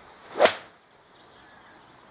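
A golf club swung through and striking a ball off a range mat: one quick rising swish that ends in a sharp strike about half a second in.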